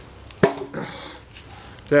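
A single chop of a Cold Steel Demko Hawk's head biting into a wooden beam about half a second in, a sharp thud with a brief ring after it.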